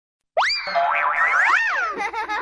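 Cartoon-style logo jingle: a springy boing that rises sharply about a third of a second in, followed by tones gliding up and down in pitch.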